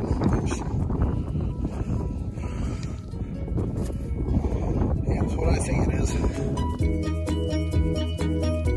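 Heavy wind buffeting the microphone with a constant low rumble. About seven seconds in, light background music with short, clear notes starts.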